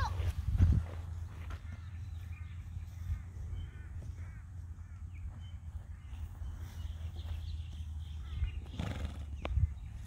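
Wind rumbling on the microphone, with faint distant animal calls a few seconds in and one short sharp click near the end.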